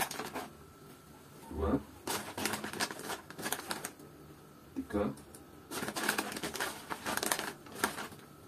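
Dry oat flakes and their packaging rustling and crackling as oatmeal is spooned out, in two clusters of rapid clicks, with a couple of short spoken counts between them.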